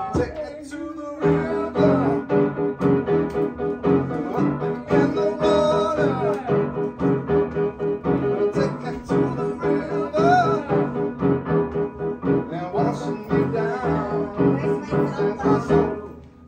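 Upright piano: a held chord for about the first second, then a steady, rhythmic pattern of repeated chords.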